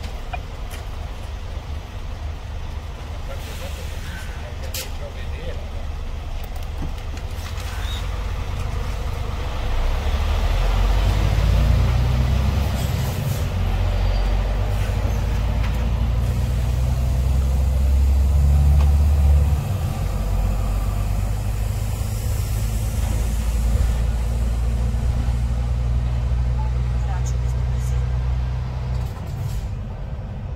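Truck's diesel engine heard from inside the cab, pulling away and accelerating through the gears. The engine note climbs and drops back at each gear change, loudest just before a drop about 19 seconds in.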